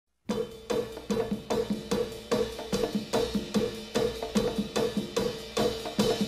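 Drum intro of a 1960s boogaloo recording: a steady drum beat, about two and a half strokes a second, starting a moment in.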